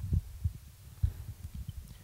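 Handling noise from a live wired handheld microphone as it is picked up and held: irregular low thumps and rumble, the loudest just after the start and about a second in.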